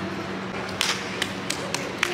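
About four sharp taps or knocks, spaced unevenly through the second half, over a steady low hum.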